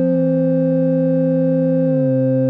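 Line 6 HX Stomp tone-generator blocks sounding a sustained triangle-wave synth chord of several held notes. The lowest note glides down in pitch just after the start and again near the end.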